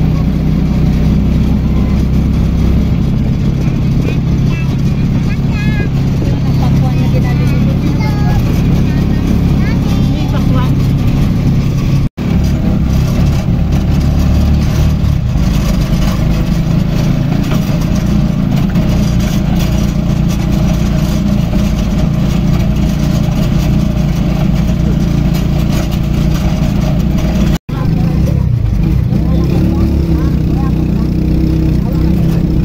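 Steady engine and road noise of a motor vehicle heard while riding along, with a low rumble throughout. It drops out for an instant twice.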